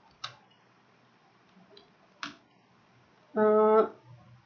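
Two sharp clicks from typing at a computer, about two seconds apart, then a short voiced sound held on one steady pitch near the end.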